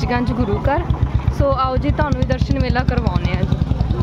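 A motorcycle engine running close by with a steady low beat, people's voices over it.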